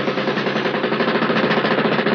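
A loud buzzing drone that pulses rapidly, about a dozen pulses a second, starting abruptly.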